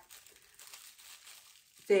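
Faint crinkling of a thin clear plastic packaging bag being handled, in small scattered rustles.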